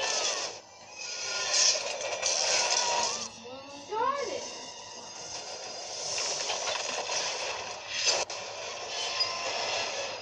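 Action-movie soundtrack played through a Coby portable DVD player's small speaker: a continuous noisy din with loud swells, and a few short voices rising and falling in pitch about four seconds in.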